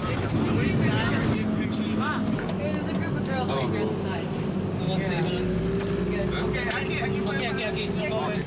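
Bus engine running with a steady drone that rises a little in pitch around the middle, under indistinct chatter of several passengers.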